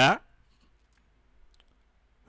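A man says "yeah" at the very start, followed by near silence with a few faint clicks.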